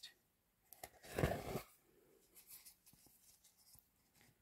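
Waxed thread pulled out of a slit and drawn across a foam kumihimo braiding disk: a short, soft scratchy rasp about a second in, followed by faint rustles and light ticks as fingers handle the disk and threads.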